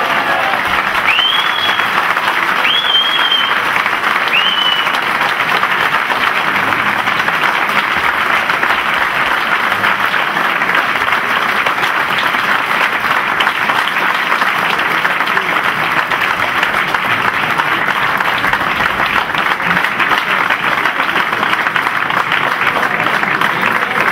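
A large audience applauding steadily and loudly throughout, with three short rising whistles over the clapping in the first five seconds.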